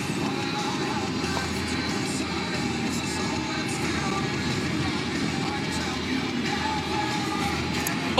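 Music playing inside a moving car's cabin over steady road noise.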